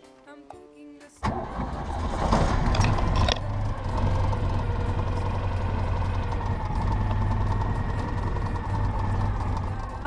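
Citroën Dyane 6's small air-cooled flat-twin engine starting, heard from inside the cabin: it catches suddenly about a second in, is loudest and roughest for the next two seconds, then settles into a steady running rumble. The car has been hesitating under acceleration, and a tired fuel pump is suspected.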